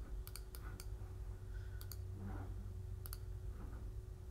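Computer mouse button clicks, faint and sharp: a few quick clicks in the first second, then a close double click just before two seconds and another about three seconds in. A low steady hum runs underneath.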